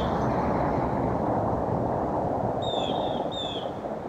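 Outdoor background: a steady rushing noise that swells and then fades near the end, with a bird giving short, high, falling chirps in a quick pair late on.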